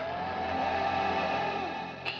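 Dramatic background-score sting: a sustained electronic tone that slides up slightly at the start, holds steady and fades just before the end.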